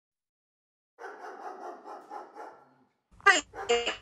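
A dog barking a few times in short, sharp barks near the end, after a softer, muffled sound about a second in.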